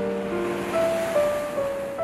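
Sea waves breaking against concrete breakwater blocks, a rushing wash that swells and subsides. Slow background music of held keyboard notes plays over it.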